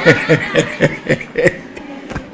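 A man chuckling: a quick run of short laughs, a few a second, that fades out about one and a half seconds in.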